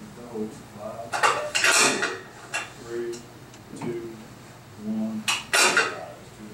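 Metal clinking and rattling from a weight-stack exercise machine, in two loud bursts about a second in and near the end.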